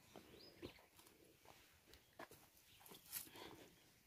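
Faint footsteps crunching on dry leaves and stony soil: a few scattered steps, the clearest a little after three seconds in.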